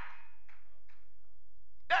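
A short pause in a man's preaching over a microphone, with a steady low hum underneath. His voice comes back just before the end.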